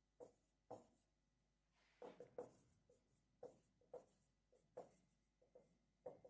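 Marker pen writing on a whiteboard: faint, short, irregular strokes and taps, roughly two a second, with a quick cluster of strokes about two seconds in.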